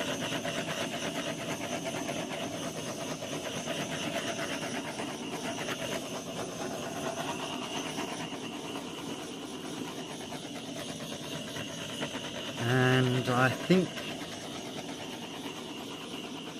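Small handheld gas torch, set on low, its flame hissing steadily, easing off slightly in the second half. A brief voice sound comes in near the end.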